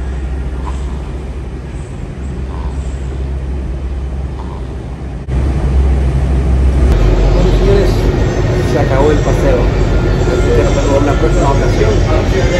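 Subway car running, heard from inside the car as a steady low rumble, louder from about five seconds in. In the second half a voice is heard over the train noise.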